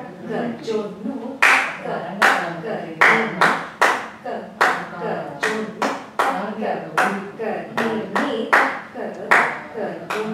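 Hand claps keeping a steady beat, the claps getting louder about a second and a half in and falling roughly once every 0.8 s. Under them a voice chants in rhythm, as in the recited syllables (sollukattu) of Bharatanatyam practice.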